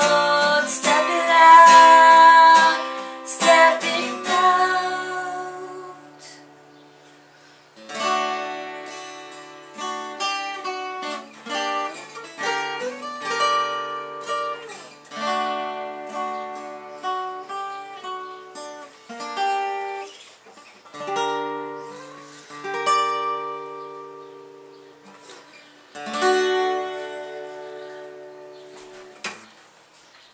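Solo acoustic guitar closing a song: a loud strummed passage that dies away about four seconds in, then, after a short pause, a slower run of single strummed chords, each left to ring and fade. A last chord rings out near the end.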